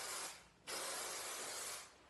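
Big Sexy Hair hairspray spraying from the can in two steady hisses: the first stops a moment in, the second lasts about a second and stops just before the end.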